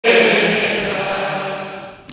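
Many voices singing together, holding one long chord that fades out.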